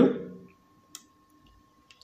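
Two faint computer mouse clicks, about a second apart.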